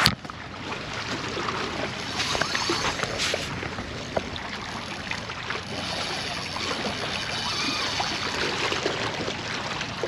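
Steady wash of waves and moving water, with a few faint clicks.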